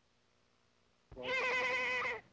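Near silence, then about a second in a child's loud, drawn-out shout with a high, wavering pitch breaks in suddenly.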